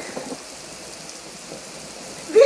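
A steady hiss of background noise.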